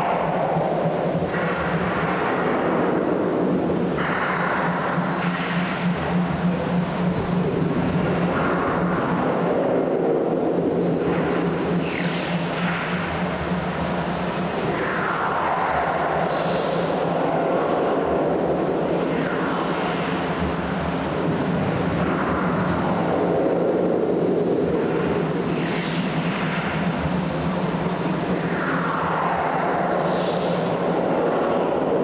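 Ride soundtrack effects in a dark ride's glowing-grid tunnel scene: a series of rushing whooshes, each falling in pitch like something speeding past, about every three to four seconds over a steady low hum.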